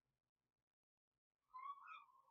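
Near silence, then about one and a half seconds in a faint, high, wavering cry begins and carries on.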